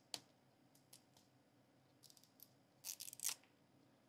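Faint clicks as fingers pick at a toy capsule ball's perforated plastic wrap, then a short burst of crackling plastic about three seconds in as the wrap starts to tear.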